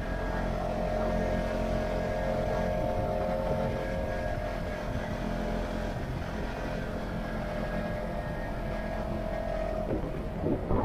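Side-by-side UTV driving steadily on a gravel road: an even engine and drivetrain drone over the low rumble of tyres on gravel.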